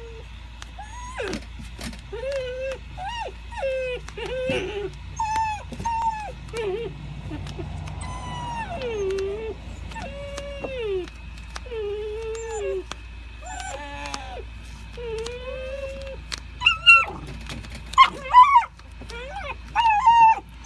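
Doberman whining and whimpering, a run of pitched cries that bend up and down, about one a second, as its ears are taped to backer rod. A few louder, sharper sounds come near the end.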